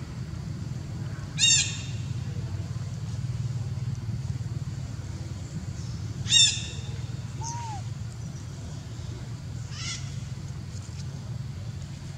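Two short, loud, high-pitched animal calls about five seconds apart, with a fainter third call near the end, over a steady low background hum.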